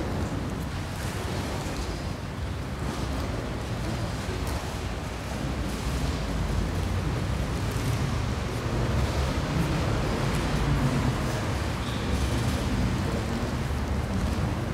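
Steady low rumble of a large hall's room noise with an indistinct crowd murmur and a few faint light knocks, no clear speech.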